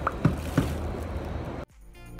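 Steady rumble of a moving train heard from inside the carriage, with two brief loud sounds in the first second. It cuts off abruptly about one and a half seconds in, and electronic background music starts.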